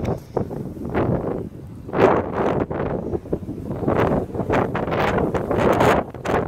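Wind buffeting the phone's microphone in uneven gusts, a rough rushing noise that swells and drops every second or so.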